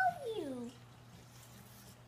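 A single drawn-out, meow-like cry that falls in pitch and fades out about two-thirds of a second in. After it, only quiet room noise with a low steady hum.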